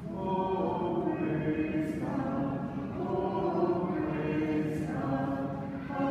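Church congregation singing a hymn together, line by line, with short breaks between phrases.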